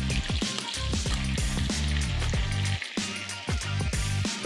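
Chicken thighs sizzling in hot oil in a frying pan, a steady hiss. Background music with deep, downward-sliding bass notes plays over it and is the loudest sound.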